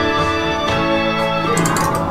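Nord Electro 5 stage keyboard playing held chords for the song's final chorus, in a deliberately aggressive sound, with new chords entering twice. A brief bright noise sounds near the end.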